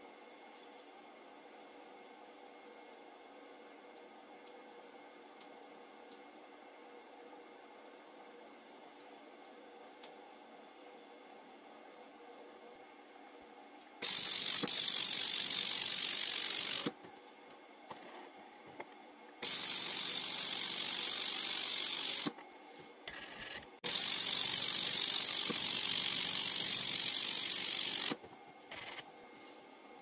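Handheld semiconductor pulse laser welder firing on 2 mm stainless steel: three loud, hiss-like buzzing bursts of about three to four seconds each, starting about halfway through, with a short blip between the second and third, each cutting off abruptly as the trigger is released. Before the welding starts there is only a faint steady hum.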